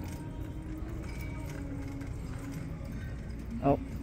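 Indoor thrift-store ambience: a low steady rumble with faint background music playing over the store's sound system. A woman's short "oh" comes near the end.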